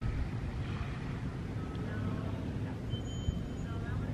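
Outdoor background ambience: a steady low rumble, like distant traffic and wind, with a couple of faint high whistling tones in the second half.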